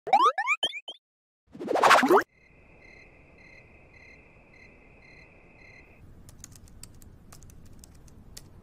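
Cartoon 'boing' sound effects, several quick rising sweeps, then a loud rising whoosh. After that comes a quiet, steady high insect trill pulsing about twice a second, and in the last two seconds scattered sharp clicks of laptop keys being typed.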